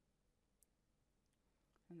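Near silence: room tone, broken by a single faint mouse click about half a second in, which advances the lecture slide.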